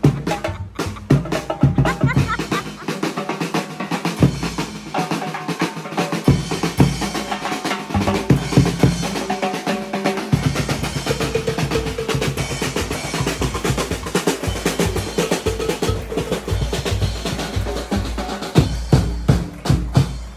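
Marching parade drum corps playing a fast, continuous beat on snare and bass drums, with drum rolls. The deep bass drum beats thin out for several seconds and come back strongly about halfway through.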